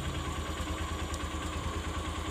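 Motorcycle engine idling steadily with an even low pulse, and a faint click a little past the middle.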